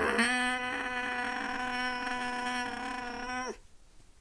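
A man's long wordless vocal cry, sliding up at the start and then held at one steady pitch, breaking off about three and a half seconds in.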